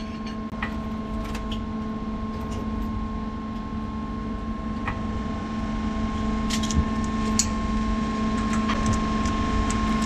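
A steady machine hum with a few fixed tones, growing slightly louder. Several light clicks and taps sound over it, with a small cluster of them about seven seconds in, as gloved hands fit the braided igniter lead and its coupling nut onto an aircraft engine's igniter plug.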